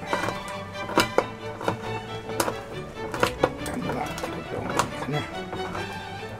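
Kitchen knife chopping a red chili pepper on a cutting board: irregular sharp knocks of the blade on the board, a few per second at most, over steady background music.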